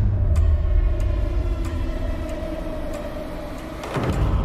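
A low rumbling drone with a steady held tone above it, easing off gradually toward the end.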